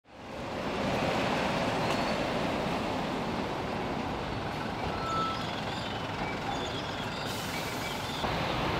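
Prison van driving slowly past, its engine and road noise a steady rumble that fades in at the start, with faint street noise around it.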